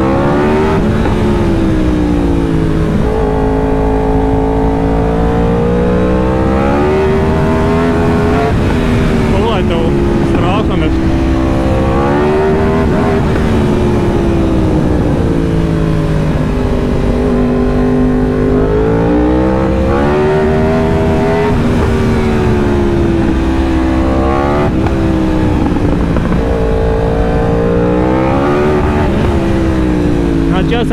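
2018 Yamaha R1's crossplane inline-four engine under way, its pitch climbing and dropping several times as the throttle is opened and rolled off.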